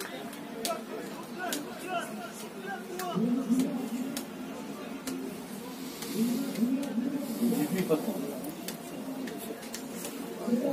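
Indistinct voices talking, strongest about three seconds in and again from about six to eight seconds in, with a scatter of faint sharp clicks.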